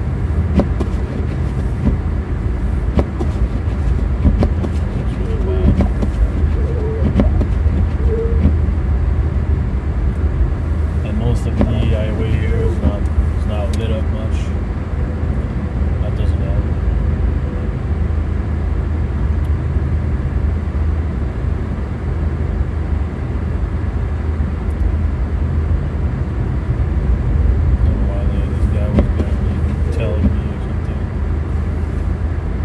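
Steady low drone of tyre, road and engine noise heard inside the cabin of an Infiniti Q50 Red Sport 400 cruising on a snow-covered highway.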